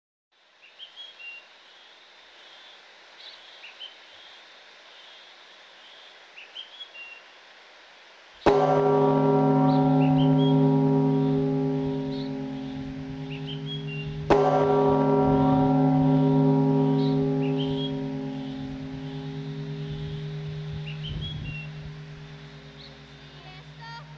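A large, deep bell struck twice, about six seconds apart, each stroke ringing on and slowly fading. Birds chirp faintly throughout, alone before the first stroke.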